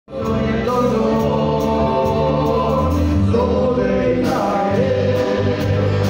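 Spanish-language Christian gospel music: a group of voices singing together over a band with a steady beat.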